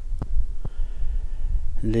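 Wind buffeting the microphone outdoors, a steady low rumble with two faint clicks in the first second; a man's voice comes back near the end.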